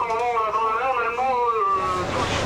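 A voice over a ship's radio loudspeaker, thin-sounding with no low end, holding one long wavering sound for almost two seconds.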